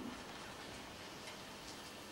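Quiet room tone with a faint hiss and a few faint, irregular ticks.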